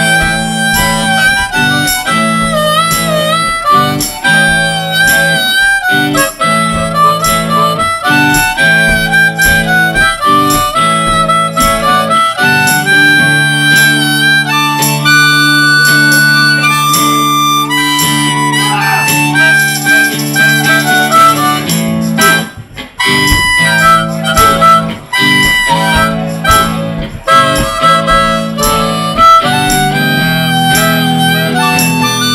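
Harmonica solo, played cupped against a vocal microphone, with bent, sliding notes over electric guitar and a steady drum beat in a live blues-rock band. About halfway through the band holds a long sustained passage, then the groove picks back up.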